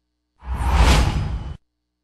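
A single whoosh transition sound effect, about a second long with a deep low end, marking the wipe to the station logo between news stories.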